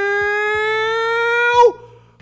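A man's voice holding one long shouted vowel at the end of "decidiu!", rising slowly in pitch for about two seconds. It cuts off sharply shortly before the end.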